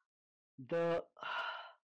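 A man's voice: a single spoken word about half a second in, followed by a breathy, sighing exhale.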